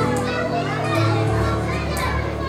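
A mixed school choir of boys and girls singing a song together, with held low notes under the voices that shift to a new note partway through.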